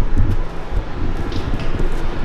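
Low rumbling noise of wind and handling on a handheld camera's microphone as it is carried along.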